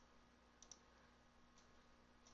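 Near silence: room tone with two faint computer-mouse clicks, one at the start and another under a second in.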